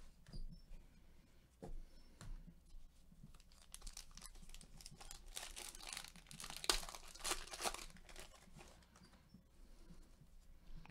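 A foil trading-card pack being torn open, its wrapper crinkling in a quick run of crackles around the middle, after a few light clicks of cards being handled.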